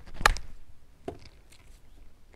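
Sand wedge striking a golf ball on a pitch shot: one sharp click about a quarter second in, then a fainter knock about a second in.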